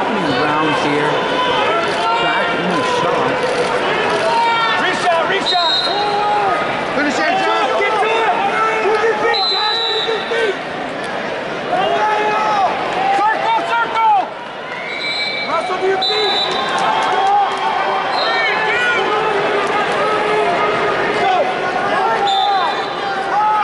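A large arena crowd of many voices shouting and cheering at once around a wrestling match. A few short, steady whistle blasts sound over it at intervals.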